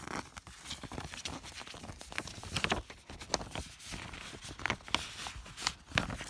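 Paper and a clear plastic binder sleeve being handled: irregular rustling, crinkling and light scraping as a replica wartime ration book is slid into the sleeve.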